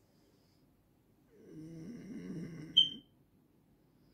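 A person's low, closed-mouth 'mm-hmm'-like hum or groan, lasting about a second and a half and starting just over a second in, ending in a brief sharp high squeak.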